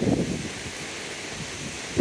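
Wind noise on the microphone: a steady low rumble and hiss, a little stronger in the first half second.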